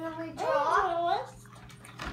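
A young girl's voice singing a short wordless tune, its pitch rising and falling for about a second, then stopping.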